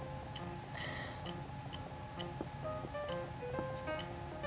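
Quiet background music: a simple melody of short notes over a steady ticking, clock-like beat, about two ticks a second.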